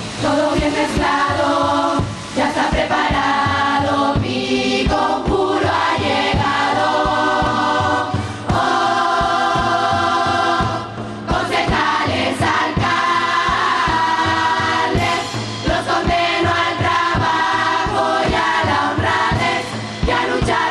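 Canarian carnival murga choir singing together in full voice over a percussion section keeping a steady beat, with short breaks between phrases.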